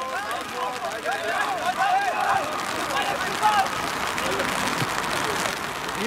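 Several people cheering and shouting over one another in celebration of a goal, with no clear words. The voices thin out into a rougher, noisier murmur in the second half.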